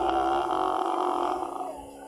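A man's voice holding one long, steady vowel for about a second and a half, dropping slightly and fading near the end.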